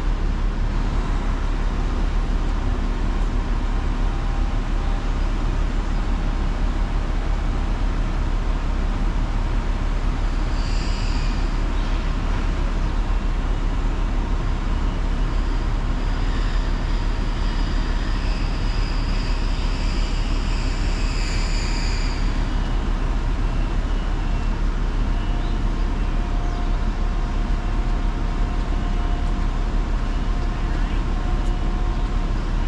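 Grove mobile crane's diesel engine running steadily as the crane lowers a heavy load, a constant low rumble. A faint high whine comes and goes in the middle.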